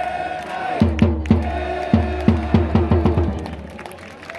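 A baseball cheering section's bass drum, struck in a quickening run from about a second in, with a long held note and crowd voices at the start. The sound dies away near the end.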